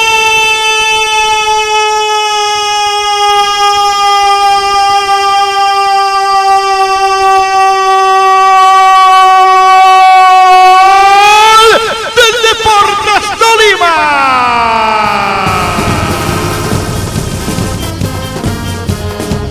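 Football commentator's long, held 'goool' shout announcing a goal: one high, steady note sustained for about eleven seconds, then rising and wavering before it falls away.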